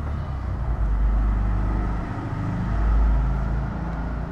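A steady low rumble that swells about three seconds in.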